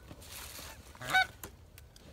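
A single goose honk about a second in, after a brief soft rustle.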